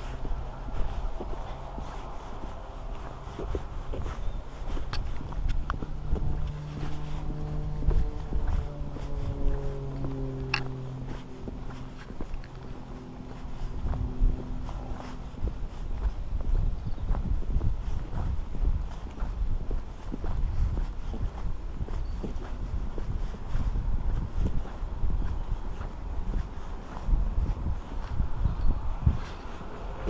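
Footsteps of a person walking in wellington boots along a wet pavement, with irregular low knocks and rumble. From about six to fifteen seconds in, a steady low hum with several pitches runs under the steps and slowly falls in pitch.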